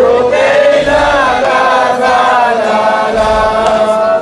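Men chanting a Shia mourning lament for Imam Hussein in unison, led by one voice over a microphone, in long drawn-out notes.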